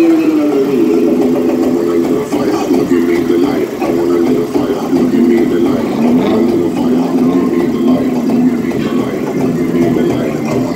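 Loud dance music with a sung or synth melody, played through the trucks' large speaker systems while the dancers perform.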